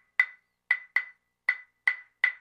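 Sparse, dry percussion knocks in music, each with a short ringing tone, about five in two seconds at uneven spacing.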